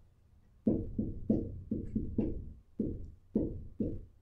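Dry-erase marker knocking against a freestanding whiteboard as numbers are written: about ten quick hollow taps, two to three a second, each ringing briefly in the board, starting under a second in.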